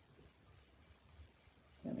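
Quiet room with faint, soft strokes of a paintbrush working paint onto a ceramic piece; a woman's voice comes in near the end.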